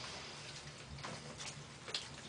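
Soft drips and small splashes of bath water, heard as a few faint ticks, as a washcloth is worked in a baby's shallow bath.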